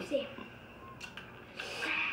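A child's short wordless vocal sound, then a couple of light clicks and a rustle near the end as a plastic bag of cheese is handled.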